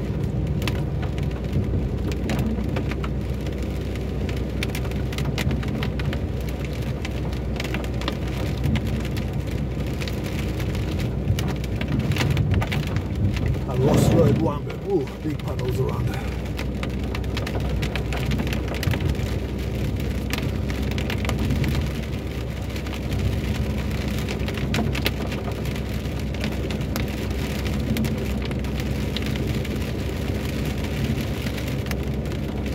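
Heavy rain pattering on a car's roof and windscreen, heard from inside the moving car over a steady low rumble of tyres on wet road. About fourteen seconds in there is a brief louder swell.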